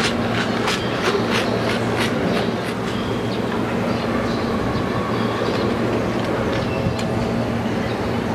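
Steady open-air stadium background noise with a low hum, and a run of sharp clicks in the first three seconds that then thin out.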